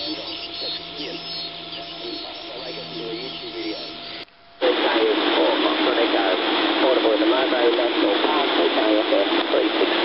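Receiver audio from the OzQRP MDT 7 MHz double-sideband transceiver tuned to the 40 m band: static and hiss with sideband voices buried in the noise. There is a short dropout about four seconds in, then the static and voices come back louder.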